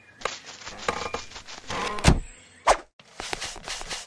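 A series of dull thumps and sharp knocks at uneven intervals, like footsteps and a door being handled.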